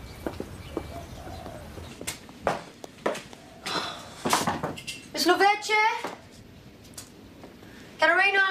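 Footsteps and a few knocks, then a loud, high-pitched voice crying out for about a second, roughly five seconds in.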